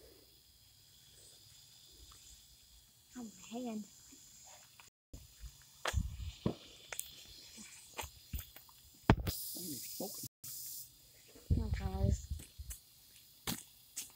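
Mostly quiet, with a few short bits of voice and scattered clicks, and a brief hiss about nine seconds in.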